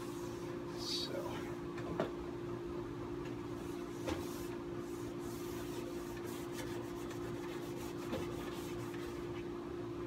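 A wax-laden Scotch-Brite pad rubbed back and forth along a freshly waxed ski, a soft scrubbing with a few light knocks, over a steady low hum.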